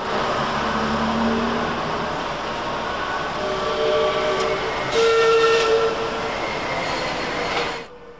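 Manchester Metrolink T68 light rail tram running, with several steady whining tones that shift in pitch over its noise and are loudest about five seconds in; the sound cuts off suddenly near the end.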